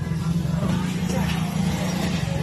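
A small motorcycle engine running steadily close by, with faint voices in the background.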